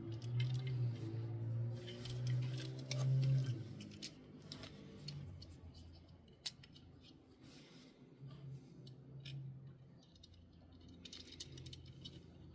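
Small sharp clicks and scrapes of fingers handling diecast toy cars and pressing a tiny plastic roof-rack part into place. A low hum runs under the clicks, loudest over the first few seconds, fading, then back briefly twice later.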